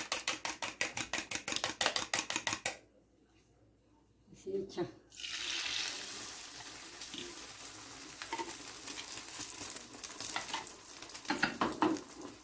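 Eggs beaten by hand in a plastic bowl, a quick, even clatter of about seven strokes a second that stops abruptly about three seconds in. After a short gap and a couple of knocks, beaten egg poured into a frying pan of hot oil sizzles steadily.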